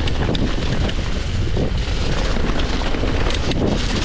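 Mountain bike rolling fast downhill over a leaf-covered dirt trail: steady wind rush on the microphone over tyre rumble, with many small clicks and rattles from the bike.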